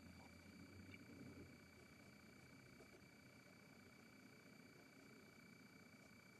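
Near silence: room tone with a faint steady hiss and hum.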